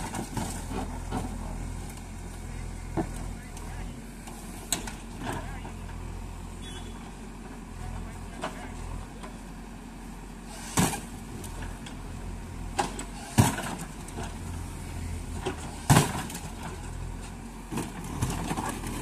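JCB backhoe loader's diesel engine running with a steady low rumble, with a few sharp knocks over it; the three loudest come in the second half.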